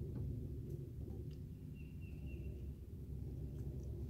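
Quiet outdoor background with a steady low rumble, and one faint, short, high-pitched bird call about two seconds in.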